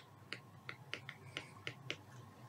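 A stylus tapping and clicking on a tablet screen while writing, about seven short sharp clicks over two seconds.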